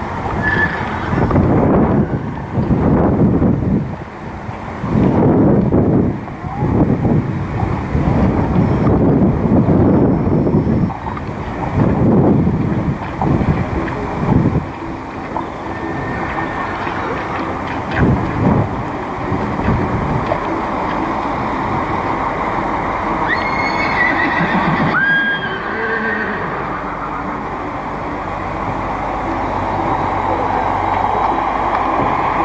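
Horses being ridden at the canter in a sand arena, loud in irregular surges through the first half and steadier and quieter afterwards. A few short, high rising calls come a little before the end.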